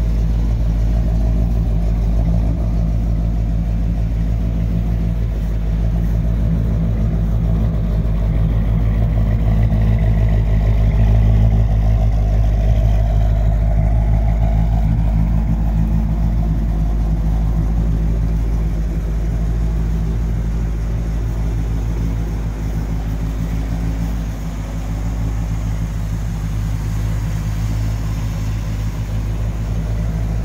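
1960 Chevrolet Impala's 348 cubic-inch V8 with tri-power carburetors idling steadily, a little louder about ten to thirteen seconds in.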